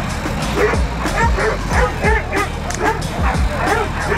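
Hog dogs barking rapidly and continuously, several barks a second with more than one dog overlapping, as they bay a wild hog. Background music with a steady low beat runs underneath.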